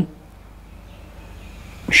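A man's speech breaks off, leaving a pause of faint, steady room tone, and his speech resumes near the end.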